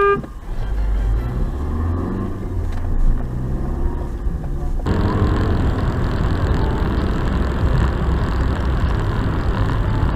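Car-interior driving noise from a dashcam: a steady low engine and tyre rumble, with a car horn blast cutting off right at the start. About five seconds in the sound switches abruptly to louder, hissier tyre and road noise at motorway speed.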